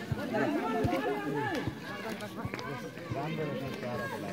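Overlapping voices of football spectators on the touchline calling and shouting, with a few dull thumps in the first two seconds.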